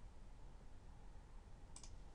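Near silence with faint steady hiss, and a short faint double click near the end.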